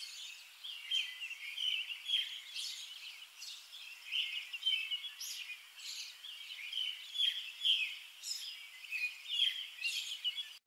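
Birds chirping: a quick, busy run of short, high chirps and calls.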